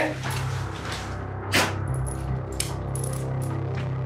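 A few light metallic clinks and jingles, like small metal pieces knocking together, over a low, steady music drone.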